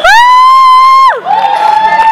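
A person whooping: one loud, high held "woo" that rises, holds for about a second and falls away, followed by a second long high note just after.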